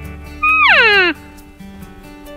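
An elk gives a single mewing call that falls steeply in pitch and lasts under a second, over background music.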